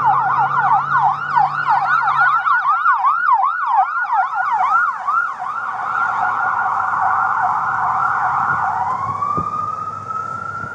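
Emergency vehicle's electronic siren in yelp mode, sweeping up and down about three times a second, quickening into a faster warble about halfway through, then switching to a slow rising wail near the end.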